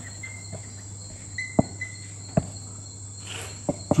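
Blue marker writing on a whiteboard: a few short faint squeaks and several light taps of the tip on the board. A steady high-pitched tone and a low hum run underneath.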